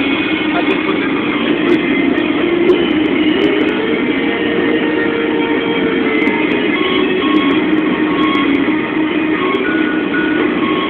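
Steady, even rumble of a moving vehicle heard from inside, with road and engine noise and no sudden events.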